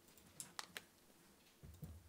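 Faint clicking of a few keystrokes on a laptop keyboard about half a second in, then two soft low thumps near the end, against a quiet room.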